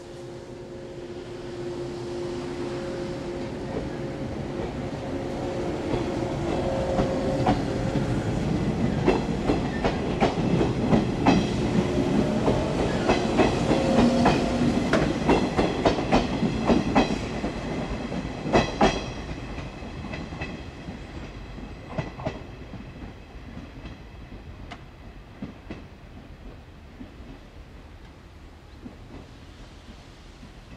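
JR 107 series electric train running past along the platform, its wheels clattering over rail joints in a quick run of clicks. It grows louder as the train comes alongside, peaks in the middle, then fades as it moves off down the line.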